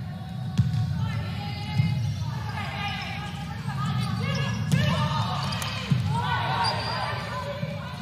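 Volleyball rally in a gym: the ball is struck by hands several times, a sharp hit every second or few, with players' voices calling out in the hall.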